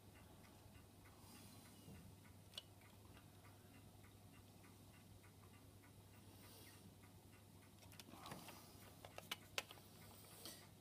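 Near silence with a faint, even ticking from the spring-wound motor of a 1929 HMV 101 portable gramophone, running its turntable with no record on it. There are a few light clicks near the end.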